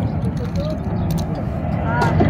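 A steady low rumble, with a faint voice briefly about halfway through.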